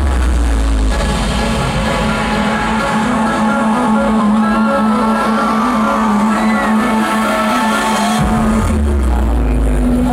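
Electronic dance music from a DJ set, played loud over a festival main-stage sound system. The heavy bass drops out about a second in, leaving a long held note under the synths, and comes back in near the end.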